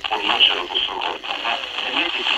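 Italian speech from a Radio Maria FM broadcast picked up by sporadic-E propagation from about 1260 km, heard through a Sangean portable radio's small speaker. It sounds thin and narrow, with little bass.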